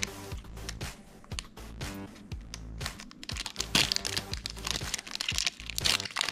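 Foil trading-card booster pack crinkling as it is handled and gripped to be opened, with crackles that grow denser from about three seconds in, over background music.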